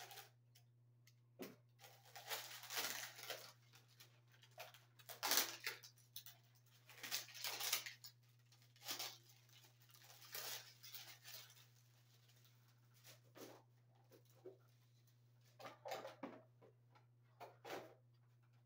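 Faint, irregular scraping and rustling of yellow non-metallic electrical cable being handled and worked at the end by hand, in uneven bursts, over a steady low hum.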